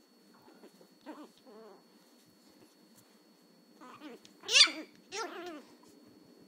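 Chihuahua puppy's small, high-pitched voice: two faint yips about a second in, then two louder, sharp barks near the end, the first the loudest. They are an agitated puppy's first attempts at barking while being teased.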